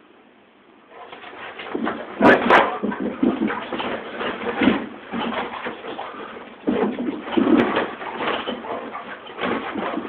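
Two dogs, one a Vizsla, wrestling in play, with irregular growling vocalizations and scuffling that start about a second in.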